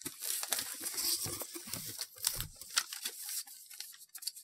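Sheets of paper rustling and crinkling as a letter is unfolded and handled, a dense run of crackles that dies away in the last second.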